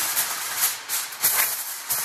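Heavy-duty aluminum foil crinkling and rustling as a large sheet is pulled from the roll and shaken out.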